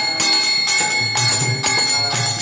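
Small hand cymbals (kartals) struck in a steady rhythm, about two strokes a second, their metallic ringing held between strokes, over a low pulsing accompaniment.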